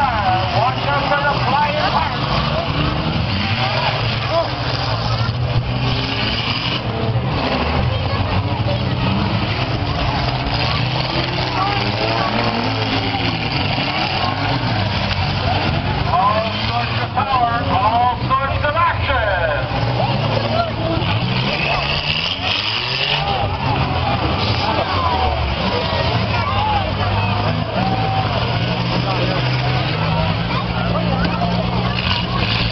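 Demolition derby cars' engines running and revving in the arena, pitch rising and falling as they push and ram one another, with the crowd's voices close by.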